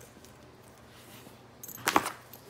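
Light handling of a leather crossbody bag, then a single sharp knock near the end as the bag is set down on a hard floor.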